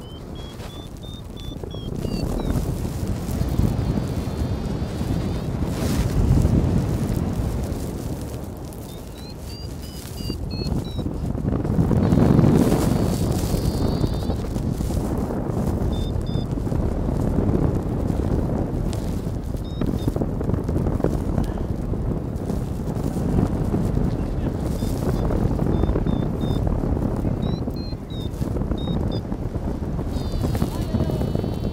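Wind buffeting the microphone: a low, noisy rush that swells about six and twelve seconds in. Faint short high chirps come now and then.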